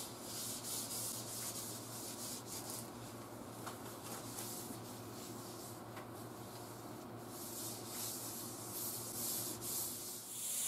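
A tack cloth wiped lightly by hand over a primed fiberglass bumper, a faint, soft rubbing, to pick up the last specks of dust before spraying. A faint steady hum lies underneath.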